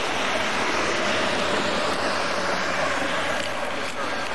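A vehicle passing on the highway: a steady rushing whoosh of tyres and wind that swells and then eases near the end.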